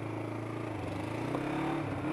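Motorcycle engine running at a steady pace while riding, heard from a helmet camera with wind and road noise. The engine note dips briefly near the end.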